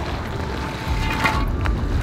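Low, steady wind rumble on the microphone, with faint scraping and rustling from an ice-rescue suit moving over the ice and a single light click near the end.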